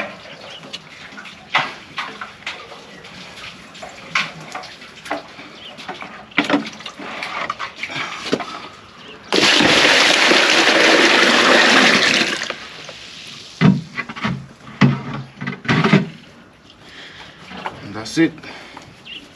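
Water poured from a plastic bucket into a plastic basin, a steady gush lasting about three seconds about halfway through. Before and after it come scattered knocks and splashes as a bucket is hauled up by rope from an underground water tank.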